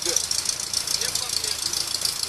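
UAZ off-road jeep's engine running at idle, a steady fast rattle throughout, with faint voices briefly about a second in.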